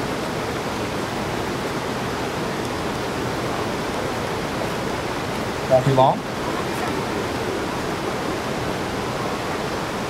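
Steady rushing noise of flowing river water, even in level with no rhythm or pitch.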